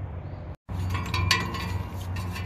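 Light metallic clinks of metal parts or tools knocking together around the engine, over a steady low hum, with a short break to silence about half a second in.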